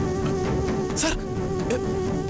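Background score: a sustained, buzzing drone note with a wavering upper layer, carried on from the music just before, with a brief high hiss about a second in.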